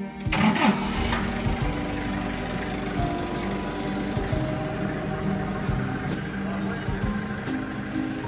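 Forklift engine running steadily as it moves under load, mixed with background music; a short loud burst of noise comes about half a second in.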